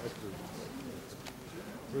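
Low murmur of several voices talking quietly in a large hall, with a few faint clicks and shuffles.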